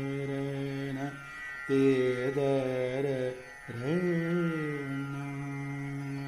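Male voice singing Hindustani classical music, holding three long notes with short breaks between them, the last one entering with a rising glide, over a steady drone.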